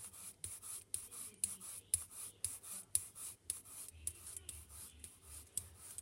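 Foam sponge brayer rolling back and forth over card stock, a rhythmic scratchy rubbing of short strokes about three a second, spacing out in the second half.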